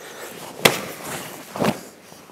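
Body contact in a close-range karate partner drill, arms and cotton gi sleeves striking as a punch is blocked and countered: one sharp slap a little over half a second in and a second, duller hit near the end.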